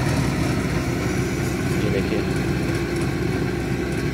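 Tractor engine running steadily under load, pulling a strip seeder that is sowing wheat through a very wet field.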